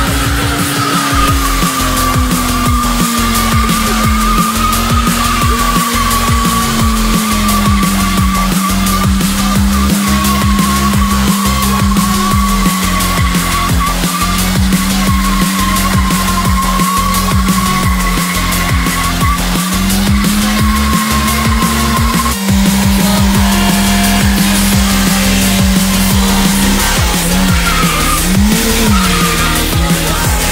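Fiat Seicento engine held at high revs as the car spins its wheels in a smoky burnout, with a steady high tyre squeal over the engine note; the revs settle lower early on, step up again about two thirds of the way through and waver near the end. Electronic music with a steady beat plays over it.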